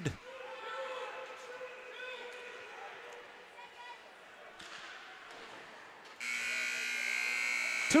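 Ice rink crowd and play sounds, then about six seconds in the arena's end-of-period horn starts abruptly, a steady buzz that holds to the end: the second period is over.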